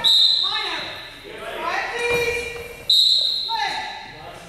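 A referee's whistle, blown twice about three seconds apart: each a sharp, high, steady blast that rings on in the gym.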